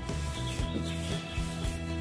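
Wet sandpaper rubbed by hand back and forth along the varnished edge of a pine wooden frame. The wet sanding smooths away the nibs left on the surface by the spray-gun finish.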